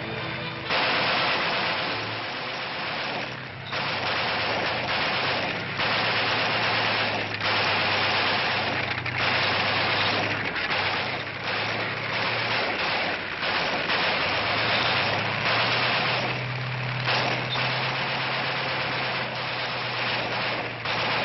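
M60 main battle tank: a steady low engine drone under a dense, continuous rattling clatter, swelling and dipping in loudness a few times.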